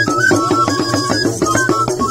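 West African drum ensemble: hand-held drums struck in a quick, steady rhythm, with small flutes playing a high melody of held notes that step between a few pitches.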